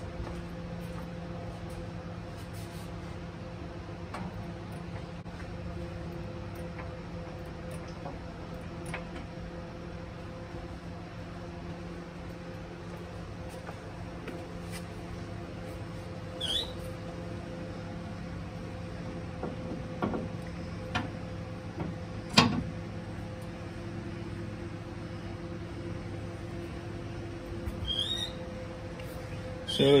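Steady background hum with scattered metallic clicks and two brief squeaks as the rear axle is jacked up under a freshly fitted air-spring bag; the sharpest click comes about two-thirds of the way through.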